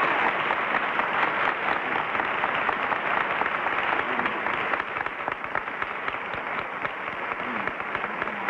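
Studio audience applauding, a dense patter of many hands clapping that eases slightly about halfway through.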